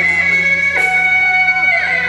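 Beiguan procession music: shrill reed horns hold a loud, steady melody line that steps between notes, with a percussion crash about a second in.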